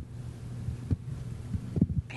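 Microphone handling noise: a few dull low thumps, near a second in and again near the end, as a microphone is picked up and passed along, over a steady low electrical hum.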